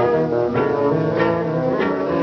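Instrumental passage of a 1930 song's band accompaniment: held notes over a bass line, with a beat struck about every two-thirds of a second.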